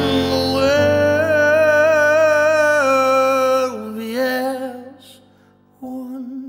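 A man singing a long held note with a slight waver over sustained electric-keyboard chords; the line steps down, the music dies away about five seconds in, and a new sung phrase starts just before the end.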